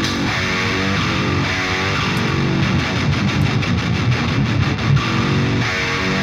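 Two high-gain metal rhythm guitars playing a continuous riff through the MLC SubZero amp sim, with tape saturation on the guitar bus.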